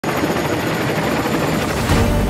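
Boeing CH-47 Chinook tandem-rotor helicopter hovering low, its rotors and turbine engines loud and steady.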